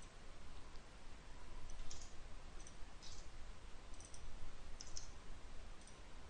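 Faint computer keyboard keystrokes: a handful of light, scattered clicks over a low steady hum.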